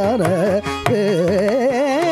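Male Carnatic vocalist singing a melismatic line whose pitch swings quickly up and down in gamaka ornaments, with a few mridangam strokes underneath.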